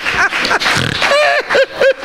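A man laughing hard into a handheld microphone: breathy, wheezing laughs at first, then a run of high-pitched 'ha' bursts about four a second in the second half.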